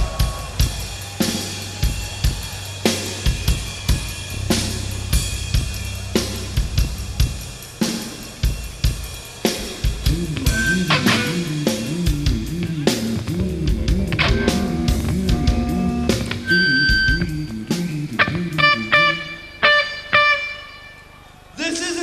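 Live rock band playing an instrumental passage. A drum kit plays snare, kick and cymbal hits over a held low bass note, then bass guitar lines run under the drums. Near the end come several ringing plucked guitar notes.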